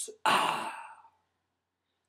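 A man's breathy sigh: one pitchless exhale about a quarter second in, fading out within about a second, followed by silence.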